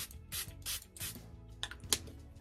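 Finger-pump facial mist bottle spritzing onto the face: about half a dozen short, quick sprays, with faint background music underneath.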